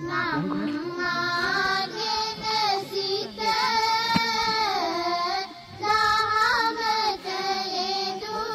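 A high voice singing a slow melody in long held notes that glide up and down between phrases.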